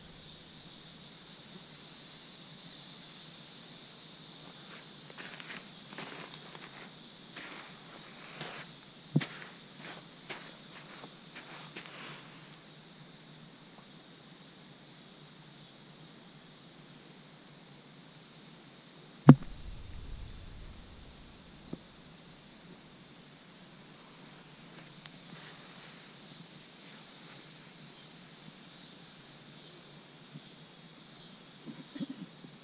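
Quiet outdoor ambience with a steady high hiss and scattered faint clicks, broken about two-thirds of the way through by one sharp, loud knock with a low thud on the camera body: a northern water snake striking the GoPro.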